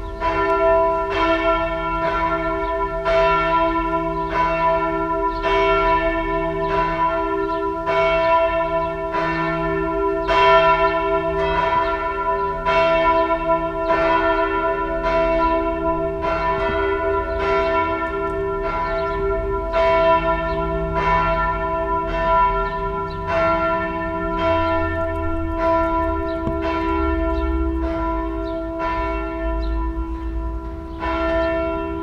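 Swinging church bells of Växjö Cathedral ringing steadily, the clapper strikes coming a little under one and a half a second, each stroke leaving a long, many-toned hum that overlaps the next.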